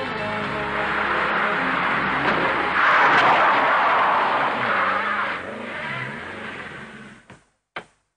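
Renault 5 Turbo rally car's turbocharged four-cylinder engine revving as the car is driven hard through a corner, with a loud surge of tyre noise about three seconds in. The engine eases off after about five seconds and fades out, followed by two short clicks near the end.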